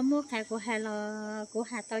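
A woman singing Hmong sung poetry (lug txaj) unaccompanied, in long held notes that bend at the ends of phrases. A steady high drone of insects runs underneath.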